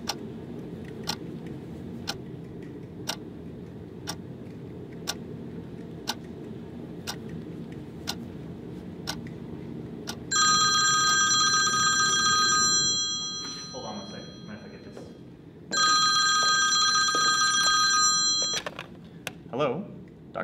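A wall clock ticking about once a second over a low steady hum, then a black desk telephone ringing twice, each ring about two and a half seconds long and much louder than the ticking.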